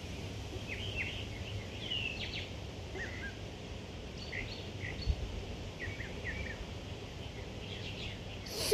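Songbirds giving short chirps, scattered throughout, over a steady low outdoor rumble, with one soft thump about five seconds in.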